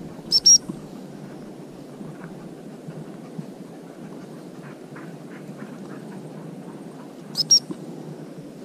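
Two short, high pips on a gundog handler's whistle about half a second in, repeated the same way near the end, over a steady low rustle of walking through dry tussock grass.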